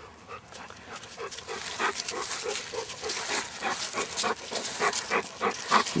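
Dog panting, about three breaths a second, getting louder toward the end as the dog comes close to the microphone.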